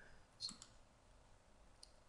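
Near silence broken by two short clicks, one about half a second in and a fainter one near the end: a computer mouse clicking to advance a presentation slide.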